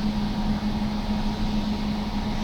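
Steady drone inside a standing tram: an even rush with one held low hum running under it.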